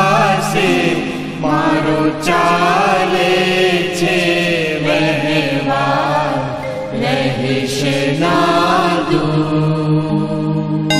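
Gujarati devotional song (bhajan): melodic singing over a steady low drone, with a few sharp strikes now and then.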